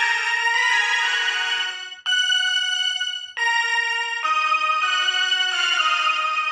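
A slow melody played on the suling (Indonesian bamboo flute) voice of the ORG 2021 Android keyboard app: held notes, a new pitch about every second or so, with no rhythm accompaniment.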